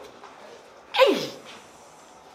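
A single short, loud vocal burst from a person about a second in, starting sharply and dropping quickly in pitch, like a sneeze or a sudden exclamation.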